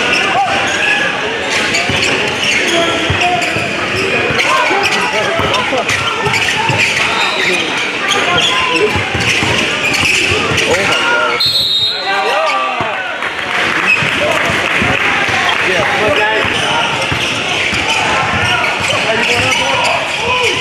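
Basketball being dribbled on a hardwood gym court during live play. Background chatter from players and spectators runs throughout.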